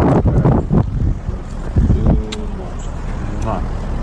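Wind buffeting the microphone outdoors, a low rumble that comes and goes, with brief indistinct talking.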